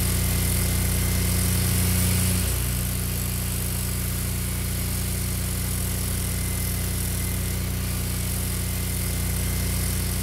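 A motor or small engine running steadily, a constant low drone, with a slight change in its pitch about two and a half seconds in.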